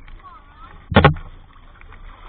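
Seawater sloshing around a camera held at the surface, with one short, loud splash or knock against it about a second in.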